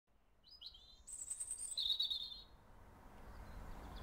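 Small birds chirping outdoors: a short high call about half a second in, then a higher trill and a lower twittering phrase that die away by about halfway through.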